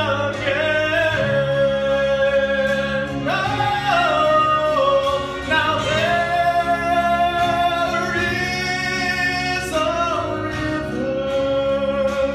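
A man singing a Southern Gospel song solo into a handheld microphone over instrumental accompaniment, holding long notes with vibrato. The melody climbs to a higher held note about three seconds in and again near the end.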